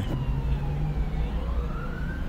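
An emergency vehicle's siren wailing faintly, slowly rising in pitch, over the low steady rumble of a car cabin.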